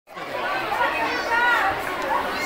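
Many children chattering and calling out at once in a hall, their overlapping voices filling the room.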